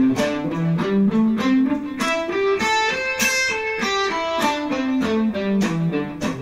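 Electric guitar playing a pentatonic scale in two notes per beat, the first note of each beat picked harder as an accent. The line climbs note by note to about the middle and then comes back down.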